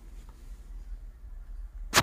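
Handling noise from a phone being carried and swung around: a low rumble, then one sharp, loud knock near the end.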